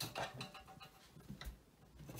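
A few faint clicks and knocks of one-pound knitting machine weights being hooked onto the ribber's cast-on comb.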